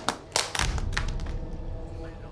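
Two short, sharp taps about a third of a second apart, then a low rumble underneath.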